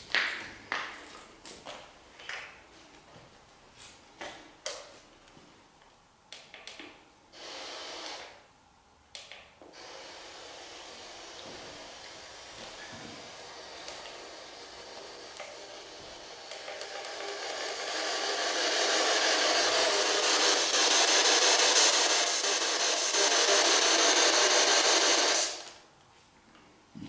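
Radio static from a ghost-hunting radio (spirit-box style session): broken crackles and short bursts of noise at first, then a steady hiss from about ten seconds in that grows louder and cuts off suddenly just before the end.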